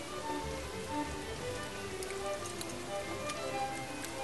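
Thick tomato meat sauce simmering in a pot, bubbles popping in short irregular blips of varying pitch, with a few faint clicks.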